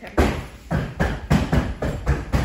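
Small basketballs from an arcade basketball hoop game thudding in quick succession, about six in two seconds, as they are shot rapidly and bounce.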